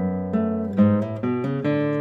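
Acoustic guitar being played, plucked notes and chords changing every third to half second.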